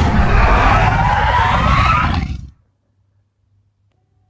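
Monster roar sound effect: a loud, rough roar with a rising screech in it, fading out about two and a half seconds in.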